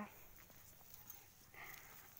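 Near silence: faint background hiss in a pause between spoken phrases.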